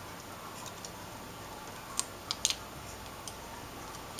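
Aluminium foil tape being handled and pressed by fingers onto the metal edge of an LCD panel frame: faint crinkling with a few sharp little clicks, bunched about two to two and a half seconds in.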